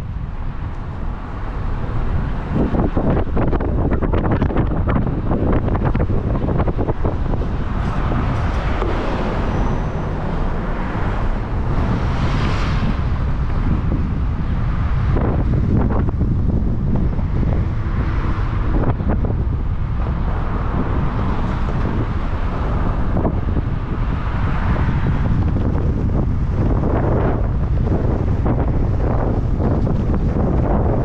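Wind buffeting the microphone of a camera on a moving car, over a steady low rumble of the car driving on the road.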